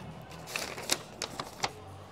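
A paper ballot being picked from a loose pile and unfolded: light paper rustling broken by about five short, sharp crackles.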